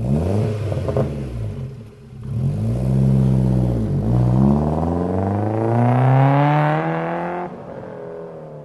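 Car engine starting with a clatter, revving up and down twice, then accelerating with a long rise in pitch that drops away near the end.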